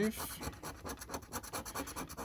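A coin scratching the coating off a paper scratch card in rapid, repeated short strokes.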